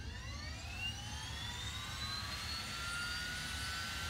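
Small electric motor spinning a toy gyroscope's rotor up to speed: a whine of several tones together rising in pitch, then levelling off in the second half as the rotor nears full speed, like a jet engine coming up to speed.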